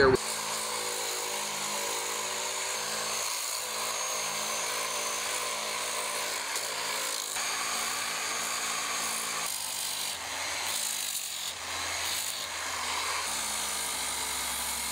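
Electric angle grinder fitted with an 80-grit sanding disc, running steadily while it sands down the surface of a cast concrete form. The grinder's whine sits under the rasp of grit on concrete, and the tone shifts a few times.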